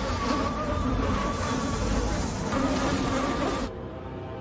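A swarm of mosquitoes buzzing: a dense, loud whine with several wavering pitches that drops away abruptly near the end.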